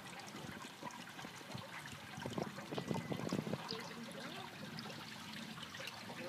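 Pond water lapping and splashing gently around a swimmer, with a cluster of small splashes a little over two seconds in.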